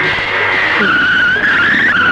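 Motorcycle tyres squealing: a sustained, high, wavering screech that drops a little in pitch just under a second in, over vehicle noise.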